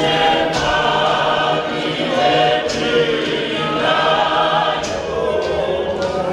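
Congregation choir of many voices singing a church hymn together, with a few sharp percussive hits scattered through it.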